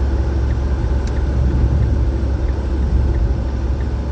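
Steady low rumble of engine and road noise inside the cabin of a small panel van on the move.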